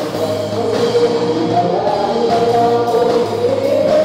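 A small band performing a Tagalog worship song: several voices singing together in long held notes over electric guitars and drums.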